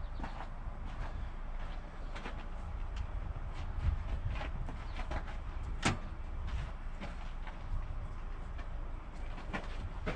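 Truck-yard background noise: a steady low rumble with scattered light clicks and knocks, one sharper knock about six seconds in.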